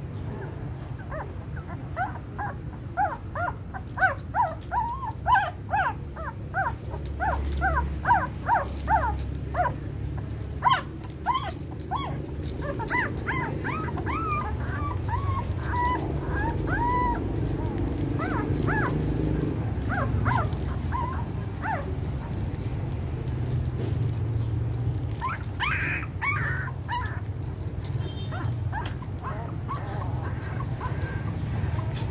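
Newborn puppies squeaking and whimpering as they nurse. A rapid string of short high squeaks runs through the first ten seconds, then come scattered longer rising-and-falling whines, and a few more squeaks near the end, over a steady low rumble.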